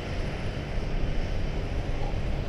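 Large tractor's engine running steadily under heavy load as it pulls a plough through waterlogged ground, its drive wheels slipping.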